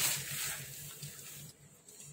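Rustle of a sheer fabric curtain brushing against the phone, a hissy swish that fades away over about a second, leaving a faint low hum.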